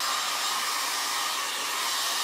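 Small handheld hair dryer running steadily, blowing air over fabric freshly painted with acrylic paint to dry it. A constant, even rush of air.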